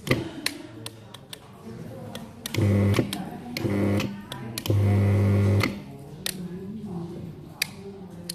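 Rocker switches on a tubular blind motor's setting cable clicking, and the AM55 tubular motor running in three short bursts with a steady low hum, the last burst the longest, about three to six seconds in.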